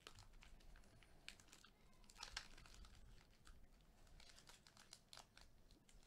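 Foil trading-card pack wrapper crinkling and crackling faintly as gloved hands peel it open, in irregular crackles that are busiest a couple of seconds in.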